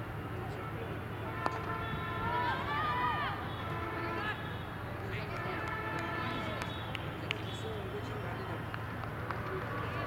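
A single sharp knock of the cricket ball about a second and a half after the delivery, then players calling out loudly for a couple of seconds, over a steady low background hum.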